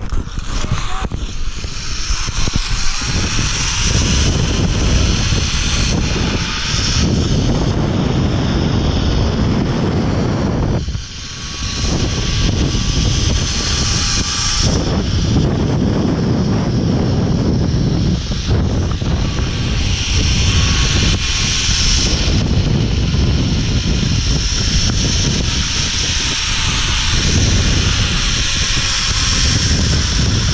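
Wind rushing over the microphone during a zipline ride, with a faint whine from the trolley wheels running along the steel cable. The whine rises and falls in pitch, and the rush eases briefly about eleven seconds in.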